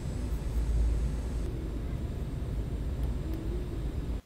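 Airliner cabin noise in flight: a steady low rumble of engines and airflow heard from inside the cabin.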